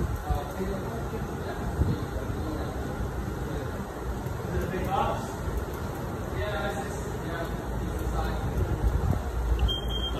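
Indistinct voices over a steady low rumble; right at the end the Garland Xpress clamshell grill's cook timer starts a steady high beep, signalling the end of the cook cycle.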